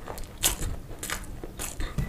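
Close-miked chewing of a mouthful of sausage with the mouth closed: wet mouth clicks and smacks about twice a second.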